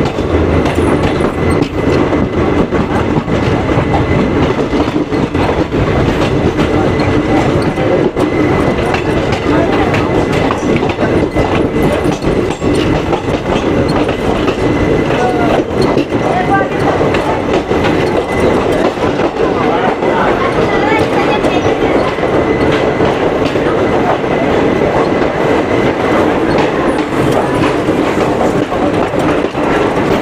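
Passenger train coach rolling along a station platform as the train arrives, heard from its doorway: a steady rumble with the clatter of wheels over rail joints, and a faint thin high tone running through it.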